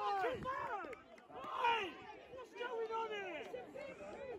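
Several distant voices calling and shouting across a football pitch, overlapping and coming and going.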